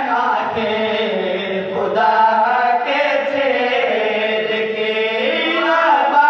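A man chanting a devotional qasida into a microphone in long, held melodic lines that glide slowly up and down, with a short break about two seconds in.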